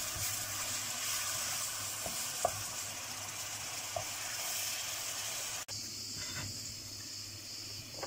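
Spatula stirring hot toasted flour in a pan as grape molasses (pekmez) is added, with a steady sizzling hiss and a few faint scrapes.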